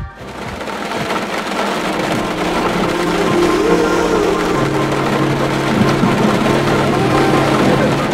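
Steady rain on a car with the low hum of its engine, heard from inside the cabin. It fades in over the first second or so.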